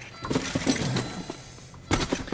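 A few soft knocks and rustles of handling inside a car's cabin, with a sharper knock near the end.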